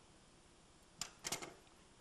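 Quiet room tone, then about a second in a sharp click followed by a few lighter clicks and taps, from hands handling the metal gas-stove igniter and burner bracket.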